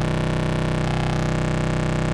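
Steady buzzy drone from an ACRONYM Eurorack oscillator, rich in harmonics from its sub-oscillator self-patched into its Morph CV, run through MidSide+ summed to mono. The upper tones dip briefly about a second in.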